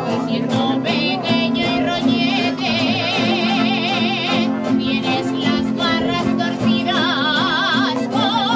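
A woman singing an Aragonese jota de picadillo in long, high notes with a wide vibrato, accompanied by a sustained piano accordion and strummed Spanish guitars.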